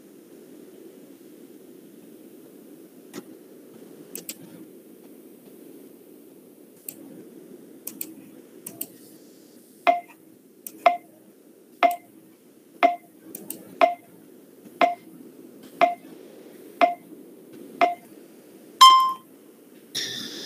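Faint clicks, then from about halfway a run of about nine sharp ringing ticks, roughly one a second, followed by a longer ping near the end. All of it sits over a faint steady hum.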